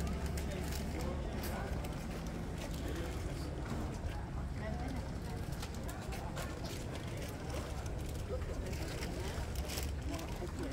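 Outdoor street ambience: indistinct voices of passers-by over a steady low rumble.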